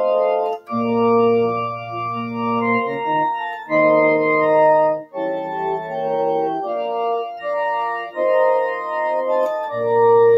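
Electronic keyboard on an organ voice playing a hymn in held chords with both hands over a bass line; the chords change about once a second, with a couple of short breaks between phrases.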